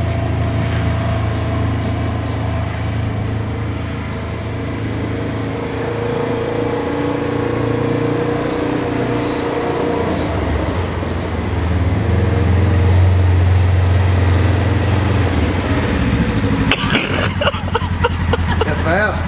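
Engine of a Polaris four-seat side-by-side UTV running as it is driven up, a steady low drone that grows louder about twelve seconds in as the machine pulls in close and stops.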